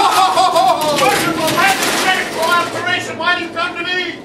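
An actor playing Marley's ghost letting out a loud, wavering cry over a dense rattling, hissing noise that fades after about two and a half seconds, in keeping with the ghost shaking its chains. Shorter shouted syllables follow near the end.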